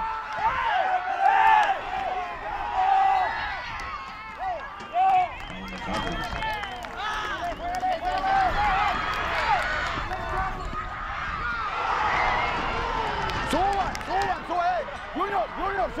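Male voices shouting across a soccer field during a match, several calls overlapping, with a quick run of short repeated shouts near the end.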